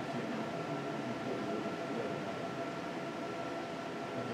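Steady room tone of a quiet hall: an even hiss with a faint, constant hum.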